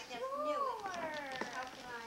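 A young child's wordless, drawn-out high-pitched vocalizing, the pitch rising and falling in long glides.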